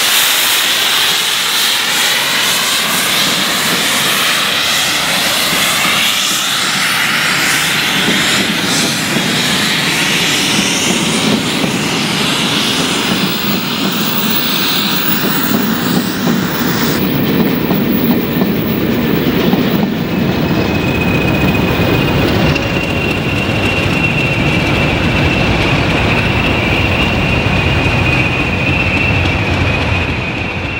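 A2 pacific steam locomotive passing at speed with its safety valves lifting, a loud steam hiss over the train noise. Its Mk1 and Mk2 coaches follow with a rumble and clatter of wheels over the rail joints. From about two-thirds of the way in a steady high whine joins, as the Class 20 diesels on the rear draw near.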